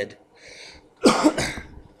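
A man coughs once, loud and sudden, about a second in, just after a short breath in.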